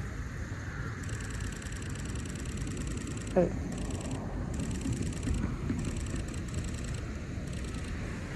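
Steady outdoor background noise: a low rumble with a faint high hiss that comes and goes, broken by one short shouted exclamation about three seconds in.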